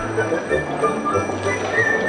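Background music: a melody of held notes over a bass line.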